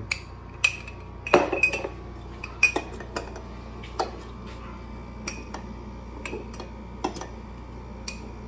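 Metal spoon clinking irregularly against the inside of a glass jar as grapes are crushed in it, some taps ringing briefly; the loudest comes about a second and a half in.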